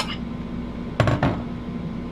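Sauerkraut being dumped from a tub into a slow cooker's crock, with a fork knocking against the tub and crock. There is a light click at the start and a short clatter with a soft thud about a second in.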